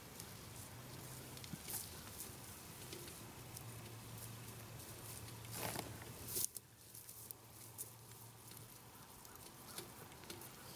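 Faint rustling and light crackling in dry grass and leaves, with a low steady hum underneath. A louder rustle comes about six seconds in, and after it the sound drops quieter.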